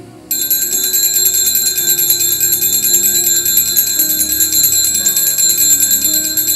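Altar bells rung at the elevation of the chalice: a cluster of small bells shaken rapidly in one continuous shimmering ring that starts suddenly just after the start, over soft sustained instrumental music.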